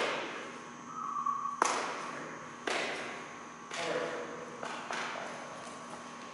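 About five sharp knocks, roughly a second apart, each echoing briefly in a large hall.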